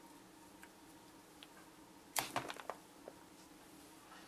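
Hands working clay horses on a wire armature: a quick run of sharp clicks and taps about two seconds in, then one softer tick, over a faint steady room hum.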